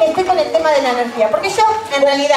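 A woman's voice speaking loudly and expressively.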